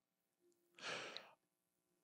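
Near silence broken by a single faint breath, a short sigh, about a second in.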